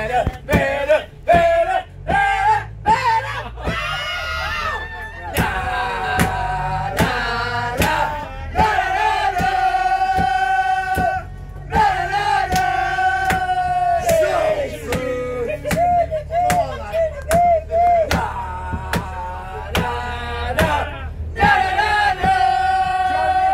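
A group of people singing loudly together, chanting-style, with some long held notes and claps keeping the beat.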